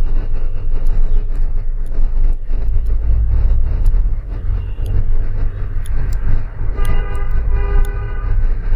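Road traffic with a steady low rumble of engines, and a vehicle horn honking twice near the end.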